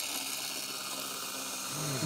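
A Dessert Bullet frozen-fruit dessert maker's electric motor running steadily, with a faint low hum, as frozen berries are pressed down its chute with the plunger and churned out as soft-serve.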